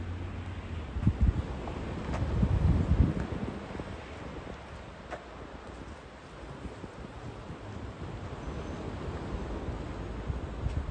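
Wind buffeting the microphone, with stronger low gusts about a second in and again between two and three seconds, then easing to a steady low rumble. A couple of faint clicks sound about two and five seconds in.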